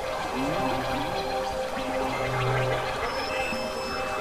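Experimental electronic noise music: a dense crackling, gurgling texture over held synth drones, with a few short pitch glides about half a second in and a low hum that swells about two seconds in.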